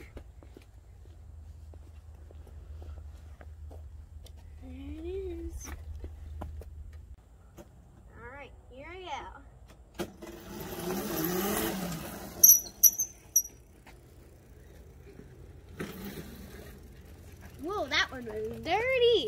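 A child's electric moped-style scooter riding past on asphalt, its motor and tyre noise swelling and fading over about two seconds. It is followed by a few short, high-pitched squeals, the loudest sounds here.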